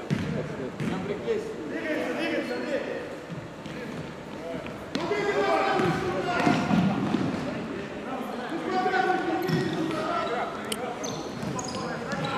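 A futsal ball being kicked and bouncing on a hardwood sports-hall floor, with a few sharp knocks, over players' voices calling out on court.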